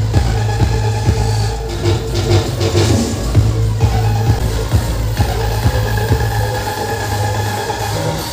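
Loud electronic dance music with a heavy, steady bass beat blasting from a truck-mounted DJ loudspeaker system.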